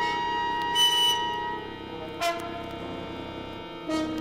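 Avant-garde wind and brass ensemble music: held, clashing tones, with a bright high chord about a second in and a sharp accented entry a little after two seconds.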